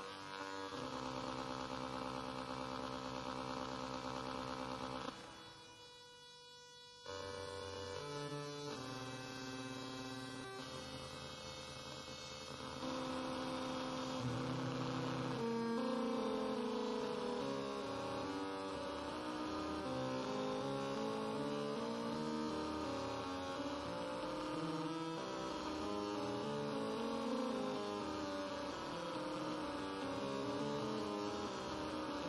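Atonal electronic music: dense sustained drones made of many steady tones held together. It drops out sharply about five seconds in and comes back two seconds later. From about thirteen seconds on it grows into a louder, thicker cluster.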